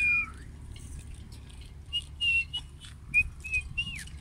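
A person whistling. A high held note ends with a downward slide just after the start, then come about six short whistled notes in two groups, the last one sliding down in pitch.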